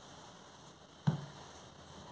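A single dull thump about a second in, from dough being worked by hand on a countertop, over faint room tone.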